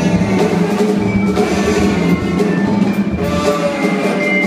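Free jazz trio playing live: a saxophone holding a sustained note over struck vibraphone notes and drum kit with cymbals.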